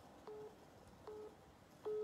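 Telephone line tone beeping over a mobile phone call: three short beeps of one steady pitch, about 0.8 s apart.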